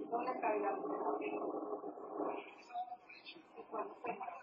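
Speech only: a voice talking in a small room.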